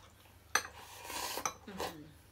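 Cutlery and chopsticks clinking and scraping against ceramic bowls and plates while eating: two sharp clinks about a second apart with scraping between them.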